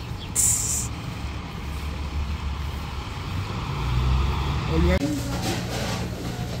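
City street traffic: a large vehicle's air brakes let out one short, loud hiss about half a second in, over a low engine rumble that grows louder towards the end. The traffic cuts off abruptly near the end, giving way to a voice.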